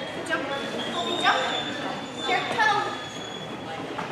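A dog barking a few short times while running an agility course, echoing in a large hall, over a background murmur.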